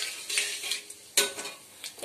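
Metal spatula stirring whole spices (cumin seeds, bay leaves, dried red chillies) around in hot oil in a steel kadai, the oil sizzling as the spices temper. There is one sharp scrape of the spatula against the pan a little past halfway.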